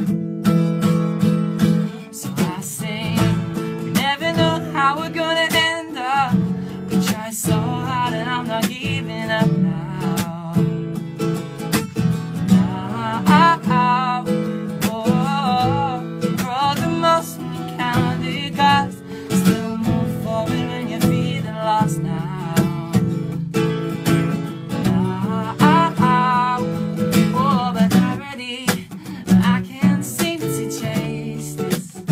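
Acoustic guitar strumming chords steadily, with a wavering melody line over it at several points, about 3 to 6 s in, 13 to 16 s in, and again near the end.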